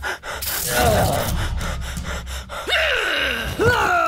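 Dubbed character voice gasping, with short cries that fall in pitch, over a steady low rumble.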